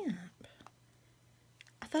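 Mostly a pause in speech: a woman's voice trails off in a falling tone at the start, then near silence with a few faint light clicks, and speech resumes near the end.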